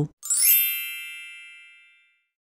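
A single bright, bell-like chime sound effect struck once, ringing and fading away over just under two seconds.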